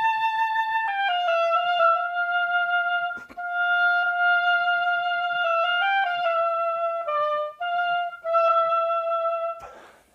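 A woodwind instrument plays a slow melodic phrase: long held notes joined by a few quick turns, dipping to a lower note about seven seconds in and ending on a long note just before the end. It is played as a demonstration of tone colour rather than of the exact notes or articulation.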